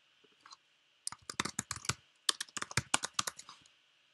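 Typing on a computer keyboard: two quick runs of keystrokes about a second each, with a short pause between them, after a couple of faint clicks.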